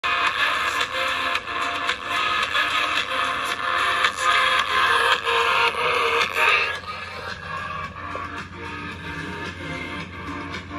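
Music playing through a speaker driven by a vintage Optonica stereo receiver, with a thin, midrange-heavy sound. It gets noticeably quieter about seven seconds in. Only one of the receiver's channels works; the other channels are dead.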